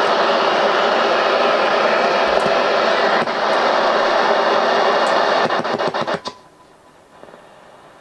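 Portable AM radio's speaker hissing loudly with static while the low-power AM transmitter is without power during a power-supply swap. A few crackles come about five and a half seconds in, then the static drops away as the transmitter's carrier returns on the switch-mode supply, leaving only a faint background hiss.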